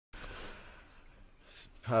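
A person's breathy sigh, then a quick intake of breath just before speech begins near the end.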